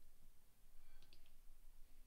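Near silence: faint room tone with a few faint short clicks about a second in.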